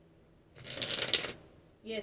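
A deck of tarot cards being shuffled by hand: a brief papery rustle lasting about a second.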